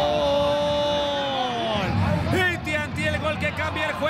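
A football TV commentator's long held goal shout, sustained on one pitch and falling away about two seconds in, then quick excited shouting.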